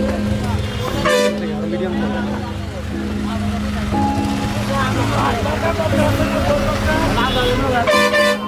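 Busy street traffic with vehicle horns tooting: a short horn blast about a second in and another near the end, over a steady engine hum and people talking.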